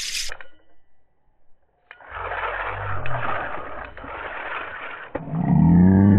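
Spinning reel's drag slipping and buzzing as a big bass pulls line, for about three seconds in the middle. It gives way near the end to a louder, low, steady hum.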